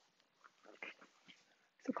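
Near silence: quiet room tone with one faint, brief sound a little under a second in, and a woman's voice starting a word at the very end.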